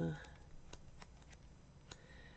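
Faint paper rustling with a few light ticks, from the pages of a sticker book being leafed through by hand.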